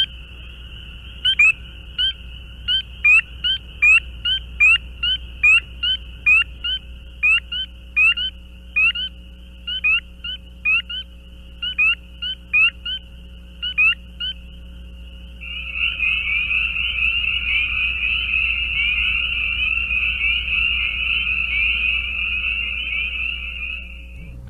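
Spring peepers calling: individual males give short, high-pitched peeps, roughly two a second, over a faint distant chorus. About two-thirds of the way through, a dense full chorus of peepers sets in, continuous and louder.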